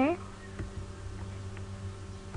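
Steady low electrical hum with a buzzing edge, and a couple of faint ticks.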